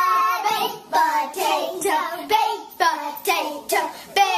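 Children singing along together.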